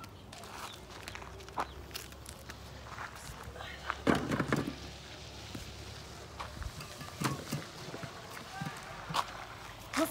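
Footsteps on dry dirt ground, with scattered light knocks and clicks; the loudest is a short burst about four seconds in.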